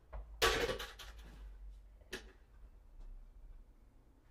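Things being handled at a workbench: a loud clattering burst lasting about a second, then a single sharp knock about two seconds in.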